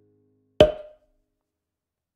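A single sharp percussive hit about half a second in, with a short ringing tail.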